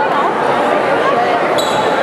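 A crowd of people talking over one another, with some raised, drawn-out voices calling out.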